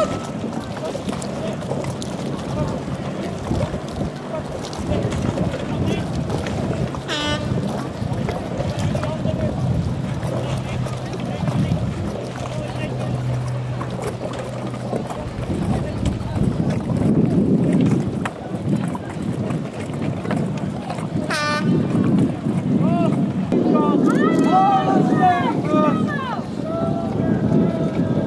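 Wind on the microphone beside open water, with distant voices shouting: a short call about 7 s in, another about 21 s in, and a run of shouts near the end.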